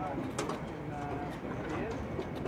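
Indistinct, distant voices of people talking, with a short steady tone about a second in.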